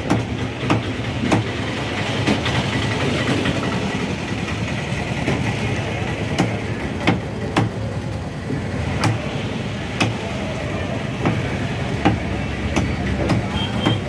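Large knife knocking against a wooden log chopping block as fish is cut, in irregular sharp strikes a second or so apart. A steady low rumble with a hum runs underneath.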